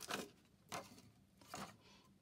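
Soft handling noises of a paper journal card and a plastic tab punch: three brief rustles and taps.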